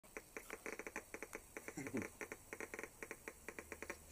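Geiger counter clicking from its speaker, picking up ambient background radiation: rapid, irregular clicks, several a second.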